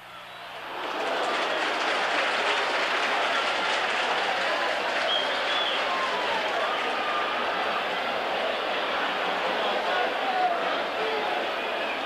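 Football stadium crowd shouting, swelling about a second in and then holding as a loud, steady wash of many voices, in reaction to a cross into the penalty area.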